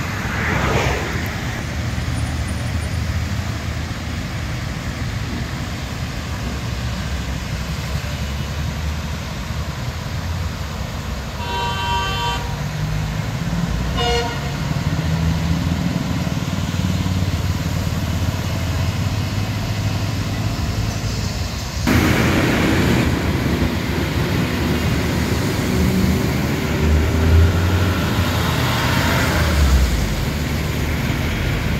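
Road traffic driving through shallow floodwater: a steady rumble of engines and tyres swishing through water. A vehicle horn honks about twelve seconds in, then gives a short toot about two seconds later. About two-thirds of the way through, the sound jumps louder with more hiss of water spray from vehicles passing close.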